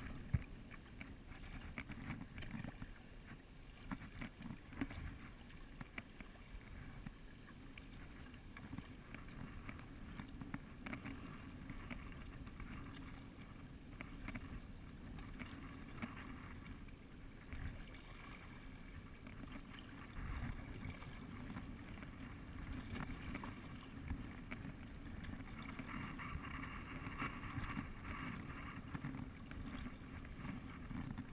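Kayak paddle strokes and water splashing and lapping along the hull, over a steady low rumble of wind on the microphone. The water noise grows brighter and livelier near the end.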